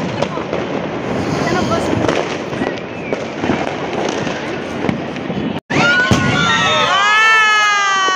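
Fireworks going off: dense crackling and popping for the first five seconds or so, then, after a brief cut, several whistling fireworks sounding at once, each whistle falling in pitch.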